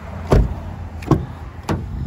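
Car door thumps and latch clicks on a 2019 Ford Flex as its rear door is opened: a heavy thump about a third of a second in, the loudest sound, then two lighter, sharper clicks about a second and a second and a half in.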